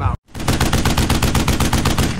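Machine-gun fire sound effect: a fast, even burst of about a dozen shots a second, lasting about a second and a half, starting abruptly after a moment of silence.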